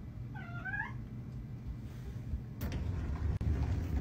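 A cat meowing once, a short call that rises and falls, about half a second in. Near the end there is a soft knock, then faint rustling.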